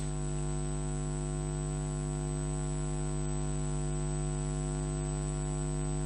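Steady electrical mains hum: a low, even buzz with many evenly spaced overtones and a faint high whine above it, carried on the broadcast's audio line with no other sound.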